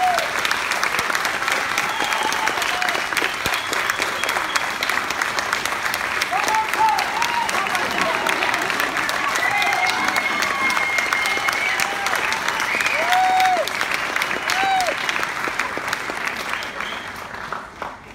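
Audience applauding, with scattered voices calling out over the clapping. The applause dies away near the end.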